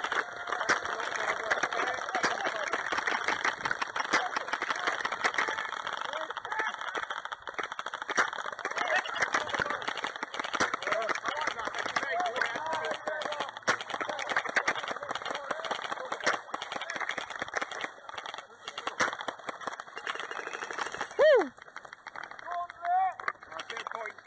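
Airsoft game in progress in open grass: a dense, continuous clatter of rapid clicks and rattles from airsoft guns firing and from running players and gear, with scattered distant shouts. About three seconds before the end the clatter stops, and a single loud falling shout follows.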